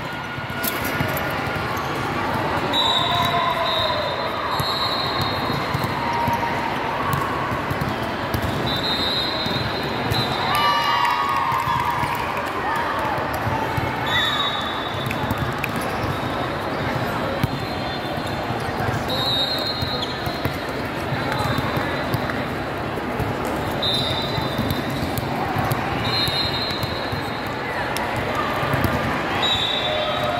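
Busy volleyball tournament hall: a steady din of many voices and volleyballs being hit and bounced on the surrounding courts, with short, high referee whistle blasts every few seconds.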